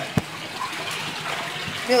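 Water running steadily, with a single sharp knock just after the start.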